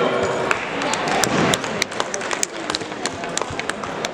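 Scattered hand claps, sharp and irregular, over a crowd's indistinct chatter in a gymnasium, following the announcement of a competitor's score.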